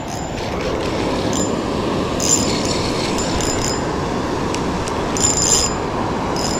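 Steady rush of a waterfall, an even noise with no beat to it, with short high-pitched tones coming and going over it several times.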